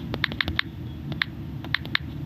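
Typing on a phone's touchscreen keyboard: a quick, uneven run of short clicks, several in the first half second and a few more spaced out after, as a word is tapped in, over a low steady hum.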